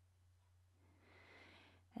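Near silence: room tone with a steady low hum, and a faint soft hiss in the second half.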